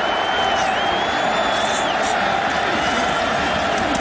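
Stadium crowd cheering steadily during a goal-line play, with a thin, wavering high whistle sounding over the noise for about two seconds and again, fainter, near the end.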